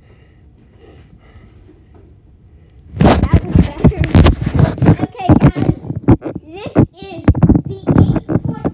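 After a quiet stretch, loud, distorted children's voices and knocking from the camera being handled start suddenly about three seconds in and carry on.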